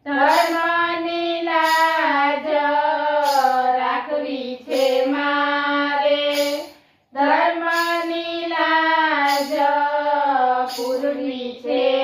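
Women's voices singing a Gujarati Ram bhajan together in unison, unaccompanied by instruments, breaking briefly for breath about four and seven seconds in. A sharp tap about every second and a half keeps time.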